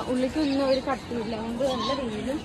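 Voices of people nearby, talking indistinctly with wavering pitch, quieter than close speech.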